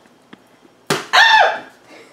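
A refrigerated Pillsbury croissant-dough tube bursting open with a sudden pop as it is pressed at its seam, followed at once by a loud, startled "ah!" cry.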